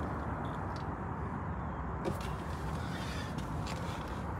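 Steady outdoor background noise with a few faint clicks.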